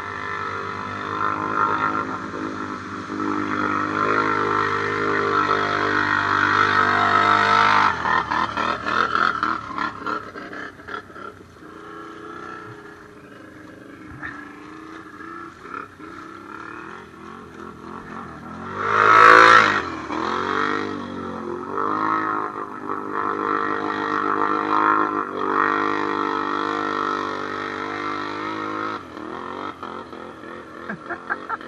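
ATV engines revving hard through deep mud and water, the revs rising and falling unevenly. The revs build over the first several seconds, then ease off. About two-thirds of the way through comes one sharp rev that climbs and falls, the loudest moment.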